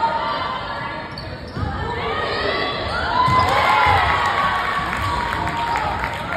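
A basketball bouncing on a hardwood gym floor during a game, several irregular thumps, over crowd chatter and cheering.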